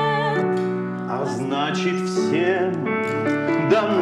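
A small live band playing a song: a woman singing with vibrato over digital piano chords and electric guitar. A violin comes in near the end.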